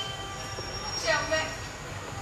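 A woman's voice on stage, one short drawn-out utterance about a second in, over a faint steady high-pitched whine.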